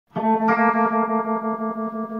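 Electric guitar, a Telecaster-style solid-body, played through a chorus or echo effect. A chord is struck just after the start, with higher notes added about half a second in, and it is held ringing with a wavering, pulsing level as it slowly fades.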